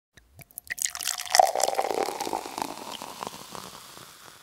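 Quick run of water-drip sounds, many small drops with a faint ringing tone. It builds over the first second and a half, then thins out and fades away near the end.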